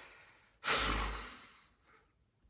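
A man's long, heavy sigh of exasperation: one exhale starting about half a second in and fading away over about a second, with breath rumbling on the microphone.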